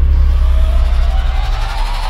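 Logo-sting sound effect: a deep, steady bass rumble with a thin tone gliding slowly upward through it, fading gradually.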